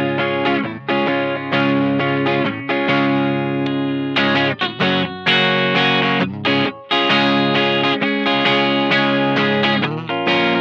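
2006 Gibson ES-335 Double Diamond semi-hollow electric guitar played through an amplifier: strummed chords ringing out, with brief breaks between them. He is playing it through its neck, middle and bridge pickup positions to show their tones.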